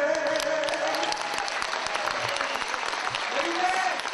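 Concert audience applauding, a dense, steady clatter of hand claps. A held sung note dies away about a second in.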